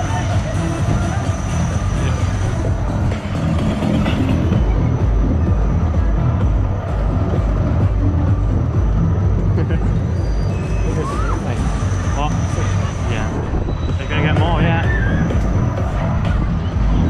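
Loud fairground dance music with a heavy, steady bass beat, played over the spinning ride while it runs, with voices calling out briefly near the end.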